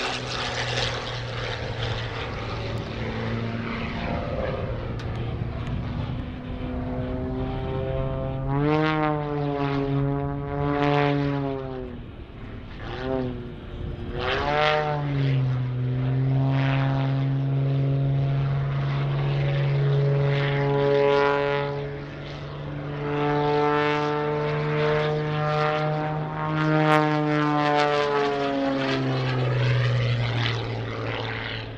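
Custom-built MXS-RH aerobatic monoplane's piston engine and propeller running at high power through aerobatic manoeuvres. Its pitch repeatedly swoops up and down as the plane passes and turns, with a brief drop in level near the middle.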